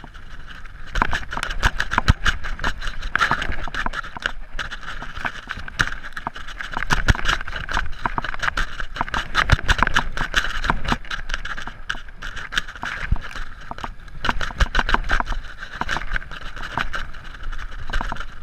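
Mountain bike descending fast on a dry dirt trail: tyres running over loose ground and the bike rattling over bumps, with many sharp knocks and clicks.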